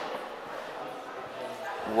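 Low, steady background hum of a large indoor hall, with speech just at the edges.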